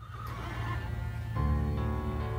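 A horse whinnies at the start, and about one and a half seconds in, music with long held notes over a deep bass comes in.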